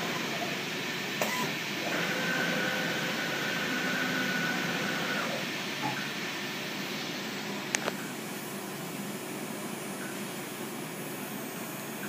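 Kongsberg MultiCUT flatbed cutting table running with a steady rushing noise, as from its vacuum hold-down blower. A high steady tone sounds from about two to five seconds in, and there are a couple of sharp clicks, the clearer one near eight seconds.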